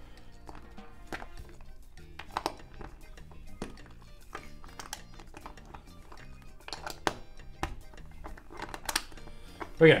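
Plastic LEGO bricks clicking and knocking as they are pressed together and handled, a few sharp clicks scattered through, over quiet background music.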